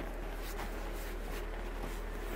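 Steady low hum and faint hiss in a quiet room, with faint rustling of a shiny synthetic ski jacket being handled.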